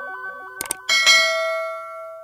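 Subscribe-button animation sound effects: two quick mouse clicks, then a bright notification-bell ding about a second in that rings out and fades. Under the clicks, the stepping synth melody of the outro music fades away.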